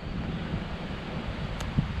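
Wind noise on the microphone: a steady low rumble with a hiss over it.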